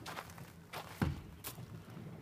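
Footsteps crunching on loose pebbles: a few scattered steps, the loudest a low thud about a second in.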